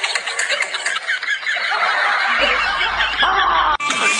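Snickering, chuckling laughter over background music, cut off abruptly just before the end.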